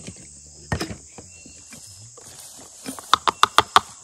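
A small plastic cup knocked against a plastic canning funnel to empty out cut tomatoes: one knock about a second in, then a quick run of about six sharp taps near the end.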